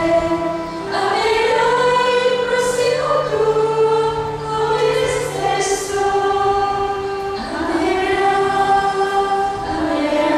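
A choir of nuns, women's voices, singing a slow song together from song sheets, holding each note for a second or two.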